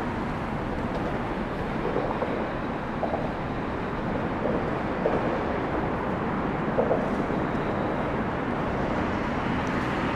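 Steady traffic noise from the elevated highway overhead, Florida State Road 112: an even, continuous rumble with no distinct events.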